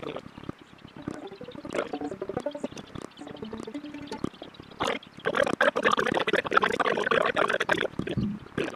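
A musician handling and tuning stringed instruments between songs: scattered short plucked notes and knocks, then from about five seconds in a louder, denser stretch of clattering noise.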